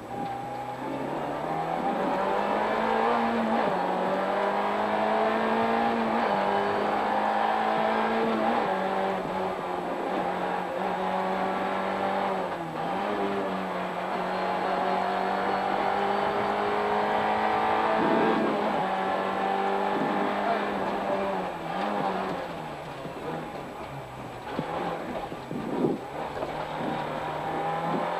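Rally car engine heard from inside the cabin, held at high revs through a stage with the pitch climbing, then dropping sharply several times (about 3.5 s, 8.5 s and 13 s in) as the driver shifts or lifts. Revs sag lower and quieter from about 22 s in before climbing again near the end.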